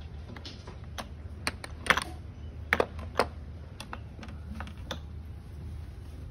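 A string of irregular light clicks and taps, about a dozen over several seconds, over a steady low hum.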